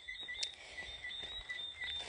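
Faint, steady high-pitched chirring of insects in the background, with a small click about half a second in.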